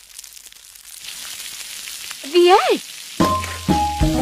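An egg sizzling in a frying pan, a steady hiss that grows louder after about a second. A short voice-like call rises and falls in pitch about two and a half seconds in. Music with a bass line starts near the end.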